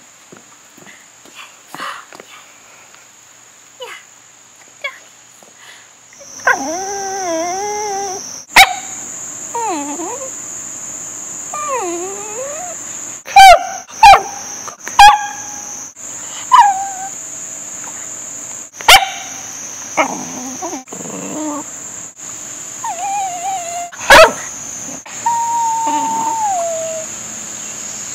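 Italian greyhounds whining, howling and giving a few sharp, loud barks, in a string of short edited bits, with a long falling howl near the end. A steady high buzz, like insects, runs behind; the first few seconds are quiet apart from small ticks as a wet dog shakes off.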